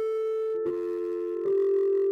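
Sustained electronic keyboard tones: one held note, joined by a second lower note about half a second in, the chord shifting and getting louder about a second and a half in.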